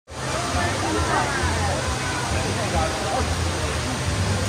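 Spectators chatting in front of a large aquarium, over a steady rushing noise and a low hum that set in suddenly and run on evenly.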